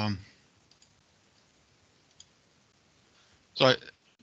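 Near silence on a web-conference line between a man's words, with a couple of faint, short clicks about one and two seconds in.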